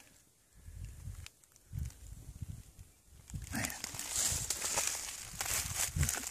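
Footsteps in dry leaf litter: a few soft low thumps in the first half, then a louder run of leaf crunching and rustling from about three and a half seconds in.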